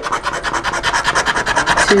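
Scratch-off lottery ticket being scraped by hand with fast back-and-forth strokes, a rapid even scratching.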